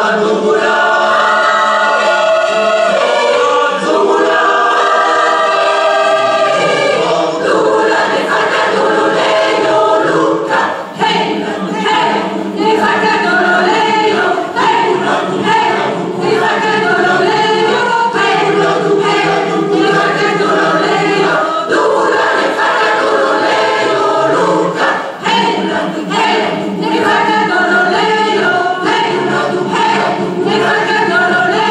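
A large mixed choir singing in full chorus. It opens on held chords, then moves into a rhythmic passage with short, sharp accents about eight seconds in.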